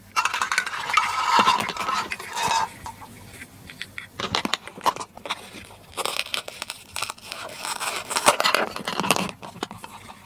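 Hard plastic toy food pieces clattering and being handled on a plastic cutting board, with scattered clicks. In the second half a plastic toy knife cuts through a Velcro-joined toy watermelon, and its halves pull apart with a rasping Velcro rip.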